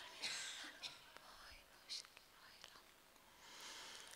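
Faint whispered prayer in a hushed hall: a few short breathy bursts of whispering over near-silent room tone.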